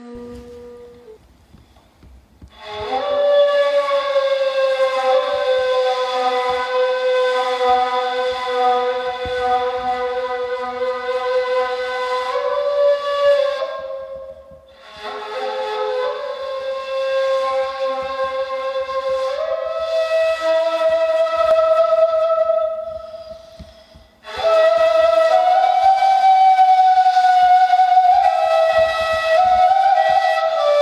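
Turkish ney (end-blown reed flute) playing a slow solo of long held notes. The notes often slide up into pitch, and the solo falls into three phrases with short breaks for breath about a third and two-thirds of the way through.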